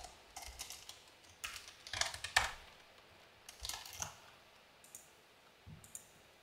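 Typing on a computer keyboard: a few short runs of keystrokes with pauses between them.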